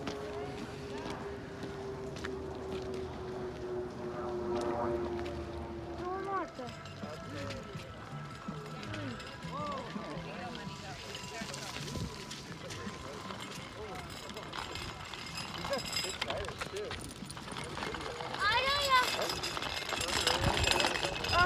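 Voices of people talking away from the microphone, not picked up as words, with a steady hum that falls slowly in pitch and stops about six seconds in. A high voice calls out near the end.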